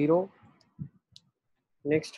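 A man speaking Hindi lecture-style at the start and again near the end, with a short quiet pause in between that holds a single faint click.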